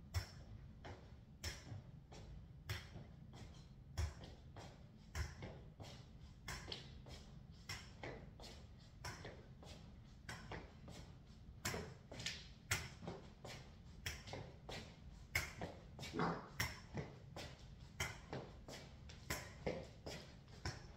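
Slow, uneven footsteps of a stroke survivor walking with a metal forearm crutch on a laminate floor: irregular taps and knocks of the crutch tip and shoes, a few per second, some louder than others.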